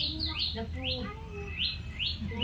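A chick peeping over and over, each peep a short, high call that falls sharply in pitch, two or three a second.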